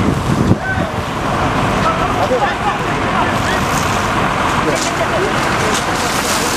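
A large fire in stacked hay bales burning with a steady rushing noise, with faint voices of onlookers over it.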